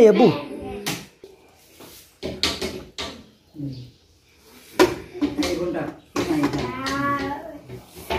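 Metal inner pot of an electric rice cooker being set down into its heating base: a few clunks and knocks, among voices.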